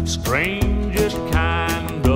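Country boogie band music, guitar-led, with a steady bass under a lead melody that slides up into its notes.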